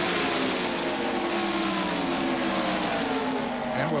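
A pack of V8 stock cars running at racing speed, the engines' combined note falling slowly in pitch as the cars go by.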